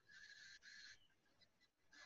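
Near silence: faint room tone, with a faint high-pitched hiss that stops about halfway through.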